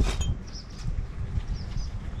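A few faint, brief bird chirps over a steady low rumble, with a short sharp clink at the very start.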